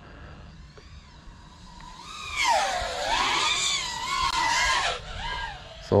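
FPV freestyle quadcopter's motors whining, faint at first, then loud from about two seconds in, the pitch swooping down and up as the throttle changes through a split-S turn, before fading near the end.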